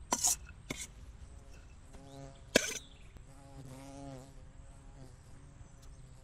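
A few sharp scrapes and clinks of a chef's knife against a stainless steel bowl, the loudest near the start and again after about two and a half seconds. Between them a fly buzzes past close by twice, its hum rising and falling as it passes.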